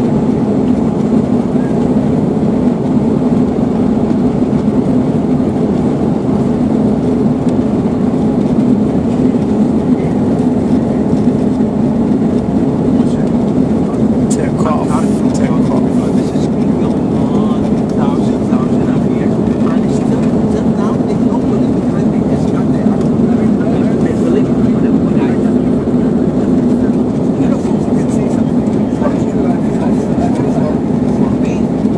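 Steady drone of an airliner's jet engines and rushing air heard inside the passenger cabin during the climb just after takeoff, with a strong low hum.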